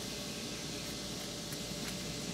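Steady, even background noise with a faint low hum and no distinct events.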